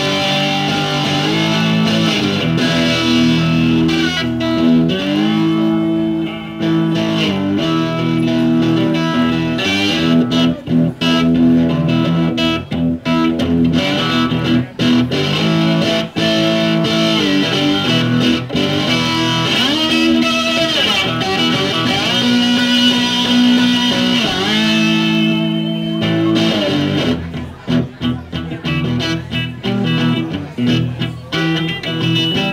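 Four-string cigar box guitar in open E tuning (E-E-B-E), played through a PA: ringing low chords with notes that slide up and down in pitch.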